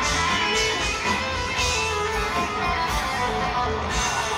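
Live rock band playing an instrumental passage with no vocals: electric guitars to the fore over bass, drums and keyboards, heard through an audience recording.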